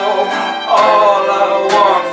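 Live acoustic band playing a country-style sad song: strummed acoustic guitar chords with fiddle and upright bass.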